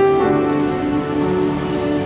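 Piano and keyboard playing a slow hymn accompaniment in held chords, without singing.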